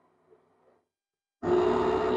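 Electric countertop blender switching on suddenly about one and a half seconds in and running loudly and steadily, its motor giving a strong even hum under the churning noise.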